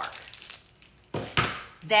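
Two quick knocks about a second in, the second louder and deeper: a plastic-wrapped block of white almond bark set down on the kitchen countertop.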